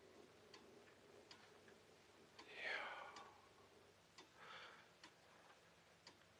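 Near silence, with a clock ticking faintly and two soft breaths: one about two and a half seconds in and a weaker one near four and a half seconds.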